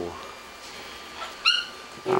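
A pet parrot gives a short chirp about a second and a half in, preceded by a fainter rising call.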